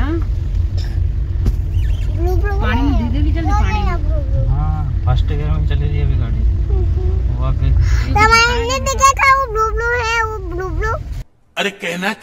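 Steady low rumble of a Hyundai Creta heard from inside the cabin while it drives slowly over a rough off-road track, with a child's voice talking over it. The rumble cuts off abruptly near the end.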